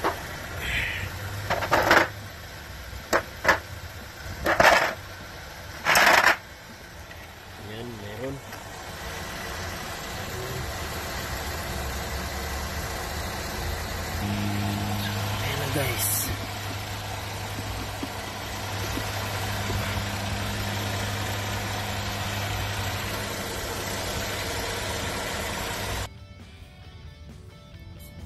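Several sharp plastic clacks and rattles as a plastic socket-set case and its tools are handled and opened in the first six seconds, then a steady low engine hum for much of the rest, cutting off abruptly about two seconds before the end.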